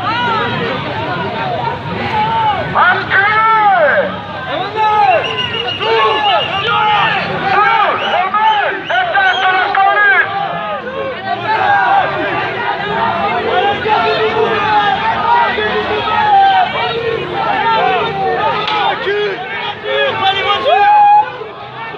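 Crowd of protesters shouting and jeering, many raised voices overlapping without a break.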